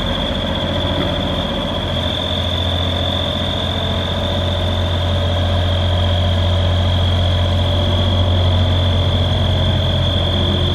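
The water-cooled Deutz diesel engine of a JLG 460SJ boom lift running steadily while the telescopic boom is raised, with a constant high whine over the engine sound.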